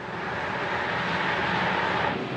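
Cars speeding side by side: a steady rush of engine and road noise that builds slightly and stops abruptly at the end.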